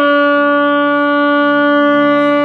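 Saxophone holding one long, steady note after a run of shorter notes.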